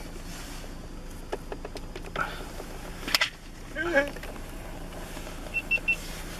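Car cabin with a steady low engine hum at a crawl, broken by two brief murmured voice sounds, a sharp click about three seconds in, and three quick high beeps near the end.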